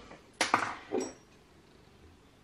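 Two short clinks of a small hard object being handled, about half a second apart, the second with a brief high ring.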